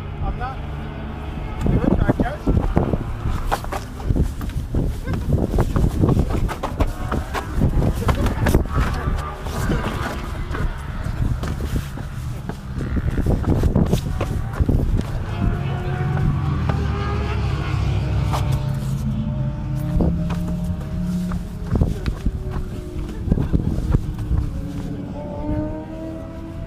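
Handling noise from a handheld camera being swung about, with repeated knocks and rubbing, and people's voices and laughter without clear words.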